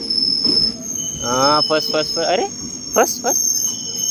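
Passenger train coaches rolling slowly past on arrival, with a steady high-pitched squeal from the wheels and brakes and two sharp knocks about three seconds in.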